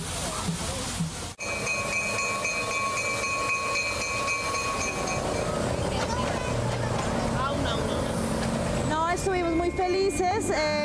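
Steam locomotive whistle blowing one long, steady note for about four seconds, starting a little over a second in, over a steady rushing noise. People's voices follow in the second half.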